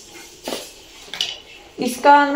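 A few light clinks and knocks of hard objects being handled: one about half a second in, a higher-pitched clink a little past one second, and another near the end.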